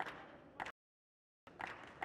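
A few faint, sharp racket strikes on a badminton shuttlecock: one at the start and another about half a second later. The sound then cuts out completely for under a second before faint hall sound and small clicks return.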